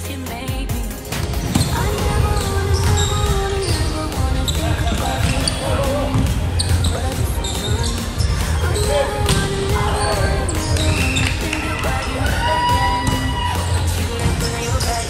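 Indoor volleyball game sounds: the ball being struck and bouncing on a hardwood gym floor, with players' voices and music playing throughout.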